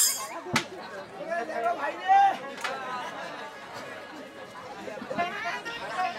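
People's voices talking, with one sharp click about half a second in.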